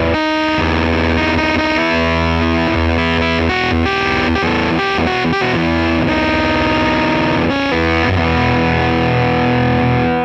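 Electric guitar played through a Jordan Bosstone fuzz pedal clone with the fuzz control all the way up, heavily distorted and sustaining. The Stratocaster is on its humbucker bridge pickup, into a Dumble 124-style amplifier, with a run of notes and chords that ring on.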